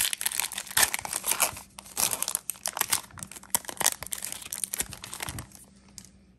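Foil wrapper of a football trading-card pack being torn open and crinkled by hand, a dense run of crisp crinkles that stops near the end.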